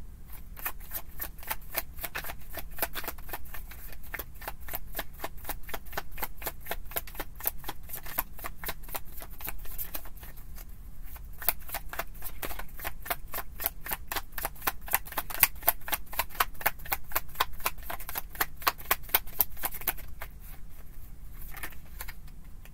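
A tarot deck being shuffled by hand: a steady run of sharp card clicks, about four or five a second, stopping near the end.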